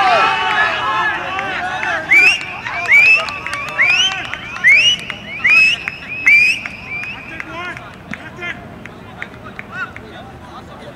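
Cricket fielders shouting together in celebration of a wicket, then a run of about eight short, loud, high-pitched calls that rise sharply at the end, fading to quieter voices after about seven seconds.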